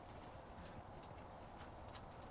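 Faint background hiss, nearly silent, with a few light clicks and taps from handling.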